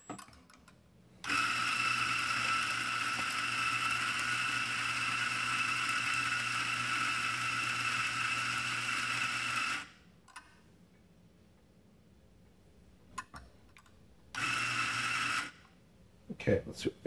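Eureka Mignon Silenzio burr grinder running steadily for about eight and a half seconds as it grinds coffee into a portafilter, then a second, short burst of about a second near the end. A few faint clicks in the pause between.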